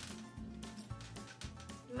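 Fingers rubbing a small plastic collectible toy egg (Hatchimals CollEGGtibles) in quick, light scratchy strokes, the rubbing that makes the heart on the shell turn pink. Faint background music runs underneath.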